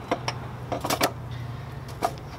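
A few light metal clicks and knocks as a turbocharger is set in place on the exhaust manifold, most of them in a quick cluster about a second in, over a low steady hum.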